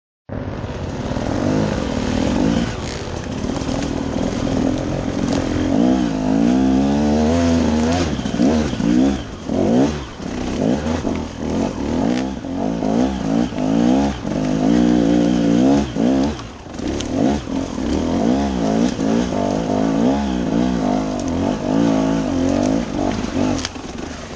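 Enduro dirt bike engine revving up and down continually under throttle on a steep off-road slope, heard from the rider's helmet camera. The throttle is briefly chopped about ten seconds in and again about sixteen seconds in.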